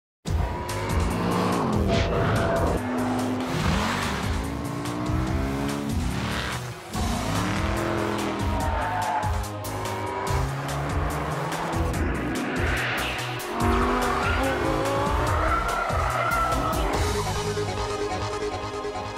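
Fast-cut montage of car engines revving, their pitch climbing and falling again and again, with tyres squealing, over a music track. The sound starts abruptly from silence at the very beginning.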